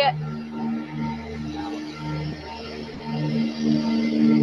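Street sweeper passing close by, heard through a video-call microphone: a steady rushing noise under a low, wavering hum that comes and goes, growing louder near the end.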